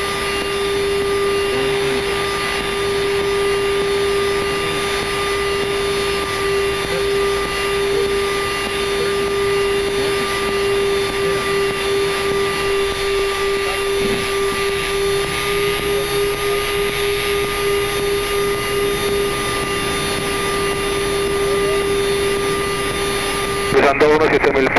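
Steady flight-deck noise of a Boeing jetliner on short final and landing: an even rush of air and engine noise under a constant hum, typical of the aircraft's 400 Hz electrical system.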